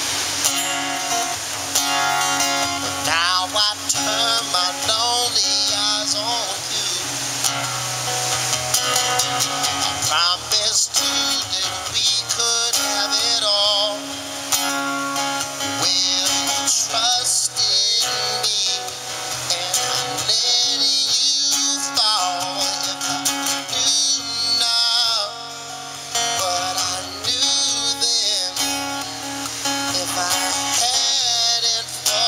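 Live acoustic guitar playing, with a man singing over it into a microphone.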